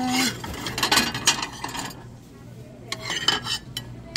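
Ceramic mugs clinking and knocking against each other and the metal store shelf as they are handled. There is a quick run of sharp clinks, a short lull just after halfway, then a few more clinks, over a low steady hum.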